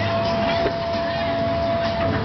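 Swinging gondola amusement ride's drive machinery running with a steady low rumble and a held whine, over a crowd's voices.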